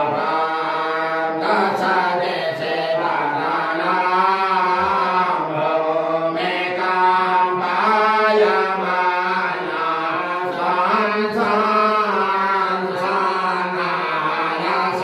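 A man chanting Sanskrit puja mantras into a handheld microphone, one continuous melodic recitation with a wavering pitch.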